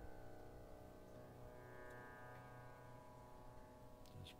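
Faint tanpura drone: its strings ringing on together as one steady, unchanging chord.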